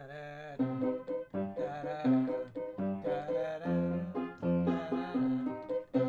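Upright piano playing a minor-key waltz tune in chords, a rough sketch of a new song.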